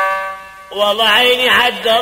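A bowed fiddle holds a long note that fades away. Under a second in, a man's voice enters singing an 'ataba verse in a wavering, ornamented line, louder than the fiddle.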